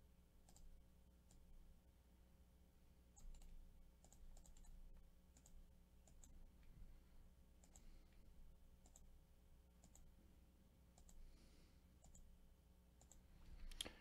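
Faint computer mouse clicks, a dozen or so spread unevenly, some coming in quick pairs, as an on-screen button is clicked over and over.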